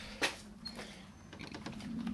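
A single sharp knock about a quarter second in, then soft handling and rustling of objects being picked up and moved while a piece of chalk is fetched.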